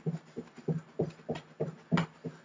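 Quick, even thuds of bare feet striking the floor while running in place with high knees, about four to five a second.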